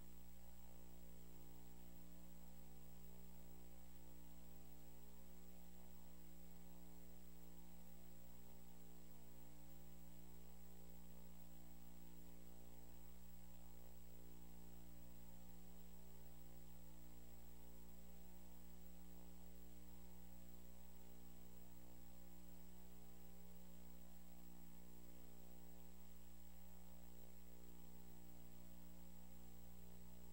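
Low, steady electrical mains hum with many overtones and a faint high whine, unchanging throughout.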